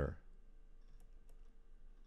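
Two faint, sharp computer mouse clicks, about a third of a second apart, over a faint steady hum.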